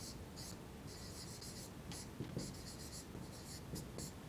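Felt-tip marker writing on a whiteboard: faint scratching in short, irregular strokes as a word is written out letter by letter.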